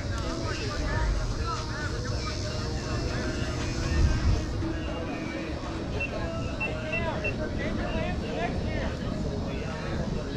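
Players' voices calling and chattering across a softball field, over a steady low rumble, with a louder low swell about four seconds in.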